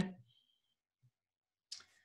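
Near silence: a dead-quiet pause broken only by one faint, short click near the end.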